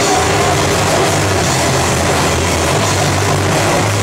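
Live metal band playing loud, its distorted bass, guitar and drums blurring into a dense, steady wash with a heavy low rumble.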